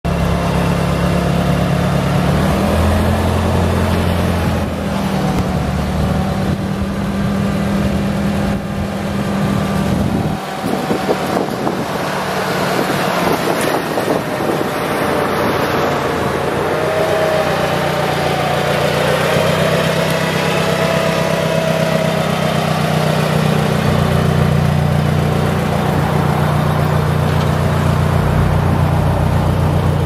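Propane-fuelled Daewoo warehouse forklift engine running steadily as the truck drives and then lifts its mast. The engine pitch steps up a few seconds in and rises again in the second half, as the hydraulic lift works.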